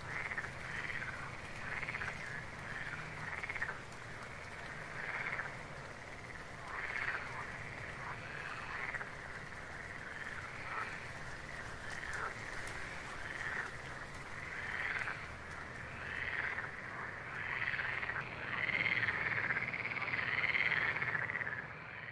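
Frogs croaking: short calls repeat irregularly throughout and crowd together near the end.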